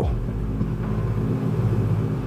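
Steady low rumbling drone made of a few level low tones, a background sound bed carried on from under the narration.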